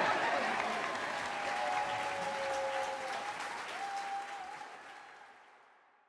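Audience applauding, with a few voices calling out over the clapping, fading out over the last couple of seconds.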